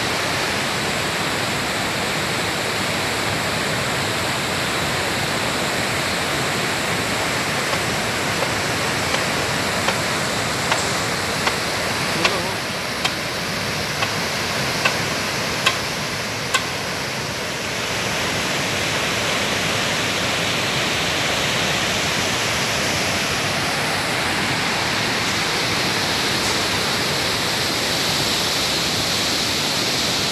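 Floodwater of a typhoon-swollen river rushing past a concrete dam wall and out of its outlet gate: a loud, steady rush of turbulent water. A series of short sharp clicks, about one a second, runs through the middle.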